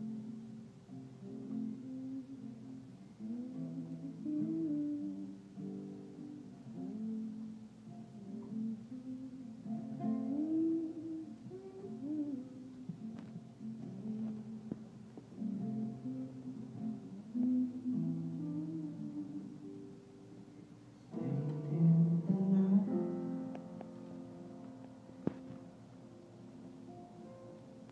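Live band playing the soft instrumental opening of a song, with pitched notes that bend and glide. It swells louder and fuller about three-quarters of the way through, picked up by a phone's microphone.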